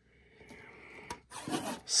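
Hands handling a shrink-wrapped metal trading-card tin: faint rubbing and scraping of the plastic wrap, with a sharp click about a second in, after a brief dead silence at the start.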